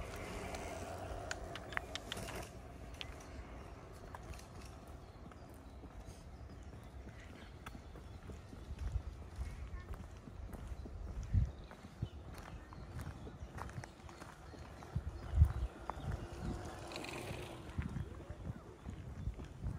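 Footsteps walking along an unpaved gravel path over a low rumble, with two louder low thumps, about eleven and fifteen seconds in.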